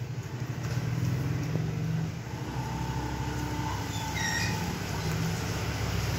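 A steady low mechanical hum with a few faint, thin tones in the middle.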